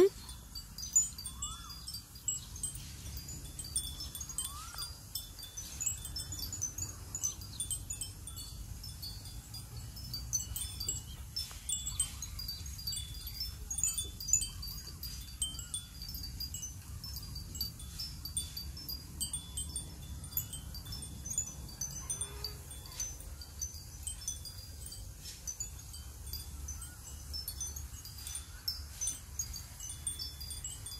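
Chimes tinkling with light, high notes scattered irregularly, over a faint low rumble.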